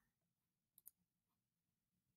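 Near silence, broken by two faint clicks in quick succession a little under a second in: a computer mouse button being clicked.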